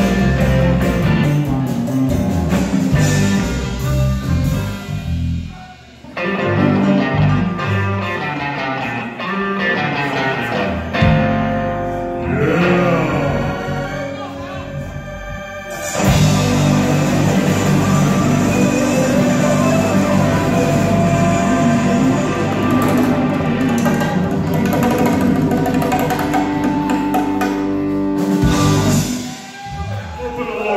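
Live blues band playing: electric guitars, bass and drum kit. The sound drops out briefly about six seconds in, thins out for a few seconds midway, comes back at full strength and stops shortly before the end.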